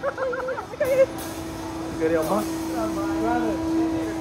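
Riders' voices in a slingshot ride capsule, with short wavering vocal sounds near the start and more voice from about two seconds in, over a steady hum.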